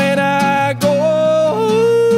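A male voice sings long held notes over a strummed Fender acoustic guitar. The voice holds one note, steps up just under a second in, then drops to a lower note held from about one and a half seconds.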